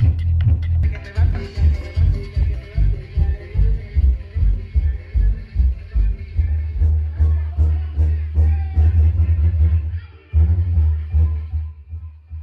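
Music played loud through a DJ sound system's subwoofers and mid-range cabinets, the bass pulsing strongly on a steady beat. The treble is thin because the system's tweeters have failed. The beat drops out briefly near the end, then comes back.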